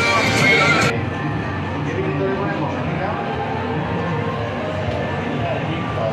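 Background music that cuts off abruptly about a second in, giving way to fairground ambience: a steady mix of indistinct crowd voices and faint fair music.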